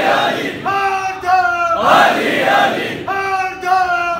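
Men chanting in call and response: a single voice calls two short phrases, and the crowd answers each time with a loud massed shout. The cycle repeats about every two and a half seconds, twice in these seconds.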